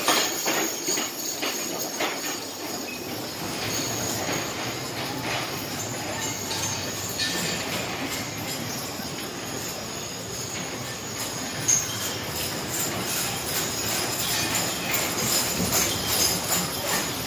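Horse-drawn show wagons circling a sand arena: a steady rumble of rolling wheels and muffled hoofbeats with harness jingling. It grows louder near the end as a hitch passes close.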